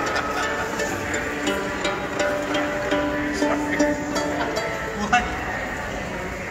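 Live bluegrass music: a fiddle bowing a melody in held notes over plucked string picking, likely the banjo.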